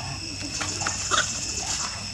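Young macaques giving short squeaks and cries as they tussle, the loudest just past a second in. A steady high insect drone runs underneath.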